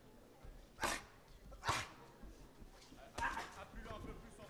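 Short, sharp shouts from ringside during a boxing bout, three in about three seconds, over a low background murmur.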